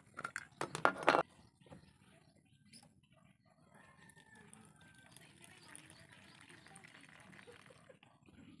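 Sharp metallic clinks as the brass burner of an alcohol stove and its cap are handled and set down, in the first second or so. Then a faint, soft trickle as fuel is poured into the burner from a fuel bottle.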